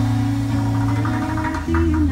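A live acoustic guitar and drum duo playing an instrumental passage without singing. The chord changes about one and a half seconds in, with light percussive taps in the second half.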